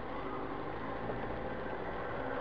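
Steady engine hum and road noise inside a car's cabin while it drives slowly.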